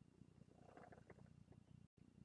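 Near silence: faint low room noise with a few soft, faint ticks and rustles.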